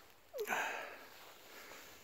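A single short, breathy sniff about half a second in, lasting about half a second.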